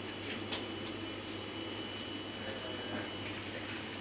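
Steady shop background: a constant low hum with faint, steady high-pitched tones and a few faint ticks, as from the store's ventilation or refrigeration.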